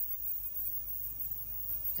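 Stepper motors driven at slow speed by DRV8825 drivers, giving a steady high hiss over a low hum that starts abruptly at the beginning.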